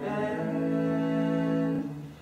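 Unaccompanied singing voices holding a long sustained note, which stops shortly before the end.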